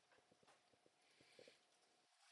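Near silence: room tone with a few faint, short clicks, the loudest pair about one and a half seconds in.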